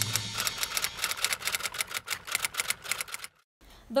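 Typewriter sound effect: a fast run of key clicks, about eight a second, that stops abruptly near the end.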